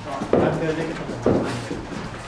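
Two short spoken utterances, about a second apart, with no other clear sound between them.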